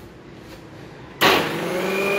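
Preethi Zodiac mixer grinder with its juicer jar switched on: the motor starts suddenly a little over a second in and runs loudly with a steady whine.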